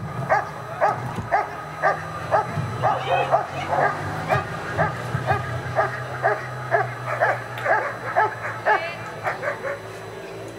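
German Shepherd Dog barking repeatedly at a protection helper, about two to three barks a second, stopping near the end: the dog is guarding the helper in the hold-and-bark of IPO protection work.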